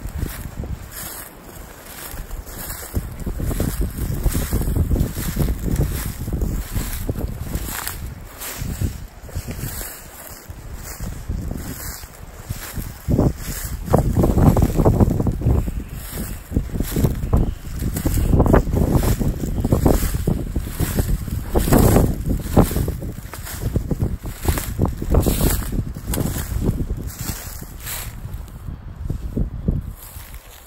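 Wind buffeting the camera's microphone, a low rumble that swells and fades in gusts, with footsteps through dry leaf litter underneath.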